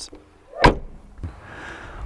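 A single sharp thump about half a second in: the 2010 Jeep Liberty's rear liftgate glass coming down and shutting. It has to be closed by hand with an Allen key because its switch no longer works, which the owner guesses is a failed solenoid.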